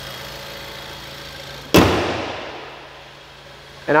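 The hood of a 2017 Ford Explorer shut with a single loud bang about two seconds in, ringing off over a second or so. Under it runs the steady idle of the Explorer's 2.3-litre EcoBoost four-cylinder engine, which sounds fainter once the hood is closed.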